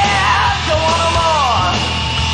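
Loud rock music, with a long sliding, wailed note over bass and drums that bends down and falls away near the end.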